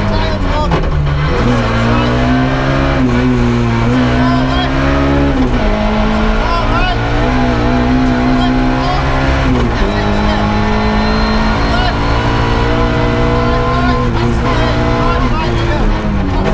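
Ford Puma rally car's 1.6-litre four-cylinder engine heard from inside the cabin while driving hard on a stage. Its note dips about a second in, then climbs and steps down again near five and a half and ten seconds in.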